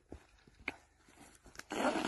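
Quiet handling sounds from hands working at the fabric casing of a UR-77 line-charge hose: a few light clicks, then a short rustle near the end.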